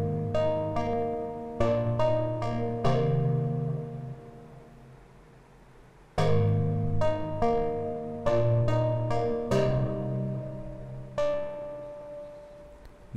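Software electric-piano preset ('Fragile Electric Piano' in Arturia Pigments) playing a slow chord progression: bell-like chords that die away quickly, without much sustain. The sound fades almost out around the middle, and a fresh loud chord sounds about six seconds in.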